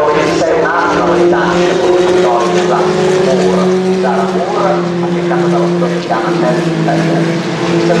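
A single-seater race car's turbocharged four-cylinder engine running at speed, a steady drone at an almost constant pitch, with a voice talking over it.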